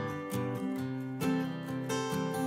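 Background music led by a strummed acoustic guitar, chords changing every second or so.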